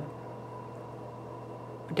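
Steady low background hum with a faint constant whine above it, unchanging throughout; a word of speech begins right at the end.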